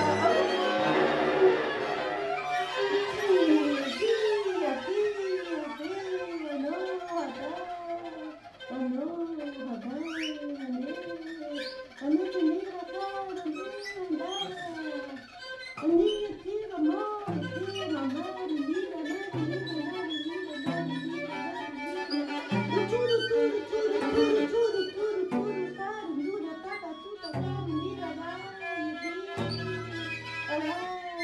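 Free-improvised music for viola, violin, voice and cello: a repeated figure of short swooping glides, each rising and falling, runs through, and low cello notes come in in short stretches from about halfway on.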